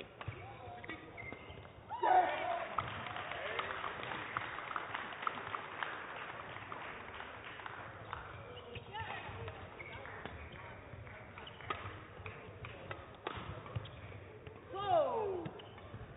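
Badminton rally: repeated sharp racket strikes on the shuttlecock mixed with players' footsteps and squeaks of shoes on the court mat, busiest from about two seconds in. Near the end a player shouts as the rally ends.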